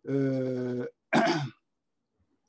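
A man's voice: a drawn-out hesitation sound held at one steady pitch for almost a second, then, after a brief gap, a short syllable falling in pitch.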